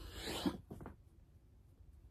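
Clothing and body rustling close to the microphone as a person drops forward onto an exercise mat into a push-up position, with a soft thump about half a second in. The movement noise is confined to the first second.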